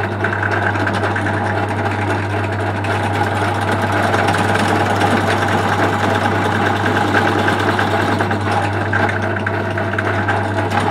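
Einhell SB 401 bench drill press motor running with a steady hum at its slowest speed while holes in a 3D-printed PLA part are drilled out.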